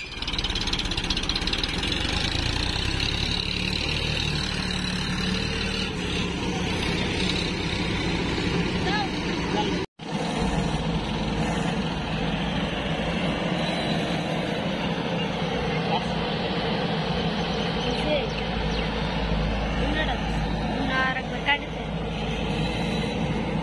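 Diesel engines of a JCB 3DX backhoe loader and a Sonalika DI-740 III tractor running steadily as the loader works, with a brief break in the sound about ten seconds in.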